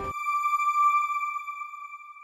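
The closing note of a TV news channel's outro sting: the music cuts off and a single high ringing note carries on alone, fading out.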